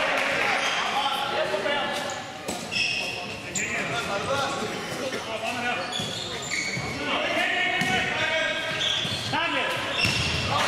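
Handball being bounced and thrown on a sports-hall floor, with short high squeaks of court shoes and players calling out, echoing in the large hall. The voices grow busier in the last few seconds.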